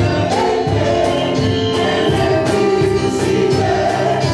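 Gospel praise singing: several voices singing together into microphones over music with a steady beat.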